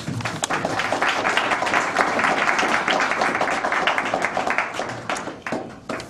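Audience applauding, starting at once, holding strong for a few seconds and fading out over about five seconds.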